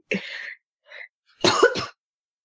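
A person's breathy vocal sounds: a short puff of breath, then a louder brief cough-like burst near the end.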